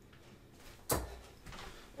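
A 20 g steel-tip dart striking a bristle dartboard: a single short thud about a second in.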